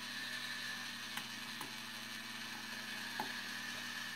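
Small geared electric motor in a Rolls-Royce Silver Cloud heater water-tap actuator running steadily, driving its arm from the closed position round to fully open, with a few light clicks from the mechanism. It stops right at the end.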